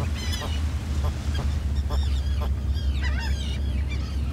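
A nesting seabird colony calling: many short, harsh, high calls overlapping throughout, over a steady low rumble.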